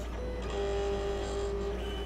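Silhouette Cameo cutting machine's carriage motors whining steadily as it moves its optical sensor to read the print-and-cut registration marks in manual registration mode. The tone starts about half a second in and shifts in pitch near the end. A low mains hum runs underneath.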